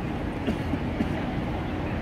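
Steady rushing rumble of the Bellagio fountain jets spraying water across the lake.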